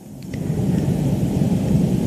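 A low rumbling noise without any pitch, building over the first half second and then holding steady.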